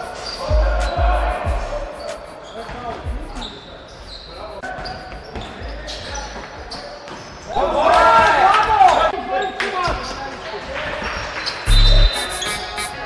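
A basketball bouncing on a hardwood gym floor: a quick run of dribbles about half a second in, then a few more bounces later. Players' voices ring out in the hall, loudest about eight seconds in.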